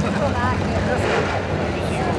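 Dirt-track race car engines running steadily in the pits, with a brief rise in engine noise about halfway through, under nearby voices.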